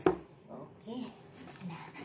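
Yorkshire terrier whimpering a few times. A sharp click comes at the very start.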